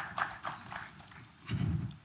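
Scattered audience clapping that thins out and dies away within the first second. A short, low, muffled rumble follows near the end.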